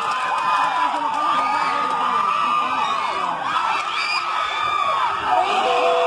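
Crowd of football spectators shouting, whooping and cheering, many excited voices overlapping. Near the end one long steady note is held over the crowd.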